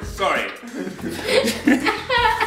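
Young women laughing and chuckling, mixed with bits of talk.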